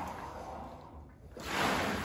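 Xterra ERG600W water rower's paddle tank: water swishing with each stroke, dying away to a lull about a second in, then surging back louder on the next pull. No belt squeal; the plastic belt assembly has been lubricated with WD-40.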